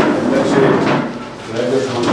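Men talking in Telugu, with a few light knocks and handling noise.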